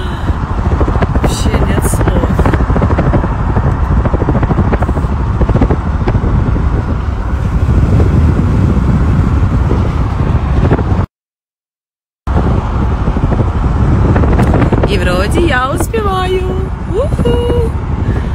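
Steady road and wind noise of a car moving at highway speed, heard from inside the car. It cuts out completely for about a second around the middle, then carries on.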